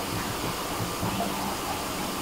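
Steady background hiss of room noise with a faint low hum; no distinct sound stands out.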